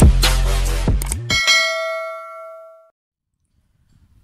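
Electronic intro music with a heavy bass beat that stops about a second in, followed by a single bell-like ding sound effect that rings and fades over about a second and a half.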